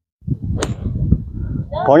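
Low, uneven rumble of wind buffeting a clip-on microphone, with one sharp click about half a second in.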